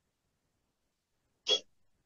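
Silence broken once, about a second and a half in, by a brief vocal sound from a man, like a short hiccup-like catch of breath.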